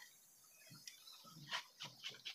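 Faint, brief rubs of a sponge scrubbing a metal kitchen tap, a few short strokes in the second half, otherwise near silence.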